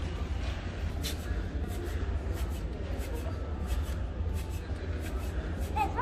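Large-store background: a steady low hum with indistinct voices and scattered faint ticks and clicks.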